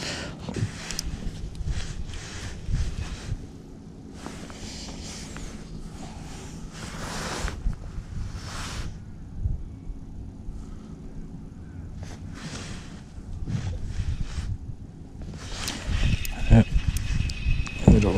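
Fishing tackle being handled on a kayak: a spinning reel being wound to retrieve a lure, with irregular swishes of handling and water or wind noise. It is loudest and busiest in the last couple of seconds.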